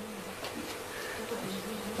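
A steady, low buzzing hum under the room tone, with a faint held tone throughout.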